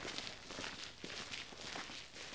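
Footsteps of several people walking on stone paving, faint and quick, several steps a second.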